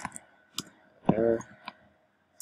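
A few sparse keystrokes on a computer keyboard as a line of code is typed, with a short voiced sound from the typist about a second in.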